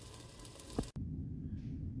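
Faint sizzle of a beef patty frying in a cast iron skillet, cut off suddenly just under a second in, leaving only a low room hum.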